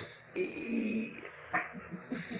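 A man's strained vocal groan, held for about a second, then a shorter grunt near the end. It mimics someone groaning and grunting with effort, as if heaving enormous weights.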